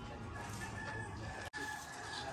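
A rooster crowing: one long, held call.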